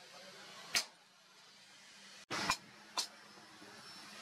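Three sharp metallic strikes of a hammer on a leaf-spring steel machete blade against an anvil, each with a short ring: one about a second in, then two half a second apart past the middle.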